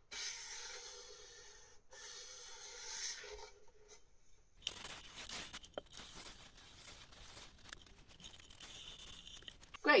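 400-grit sandpaper on a flat block rubbed along the edge of an ebony violin fingerboard, rounding off the edge with a small chamfer. Two long rasping strokes in the first four seconds, then a scratchier run of shorter strokes with small clicks.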